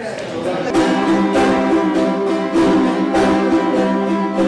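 A group of small son jarocho guitars (jaranas) strummed together in a steady rhythm, playing chords for fandango music.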